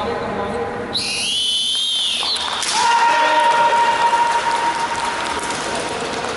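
High-pitched kiai shouts from kendo fighters: one long, slightly wavering cry about a second in, then a second held cry from about three seconds to five seconds, in the echo of a large sports hall, as a strike wins a point.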